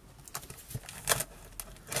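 Cardboard parcel being cut open with a small tool: a handful of short scratches and taps as the packing tape and cardboard are worked.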